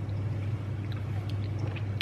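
Two people downing shots of neat apple cider vinegar: quiet drinking and swallowing sounds over a steady low hum.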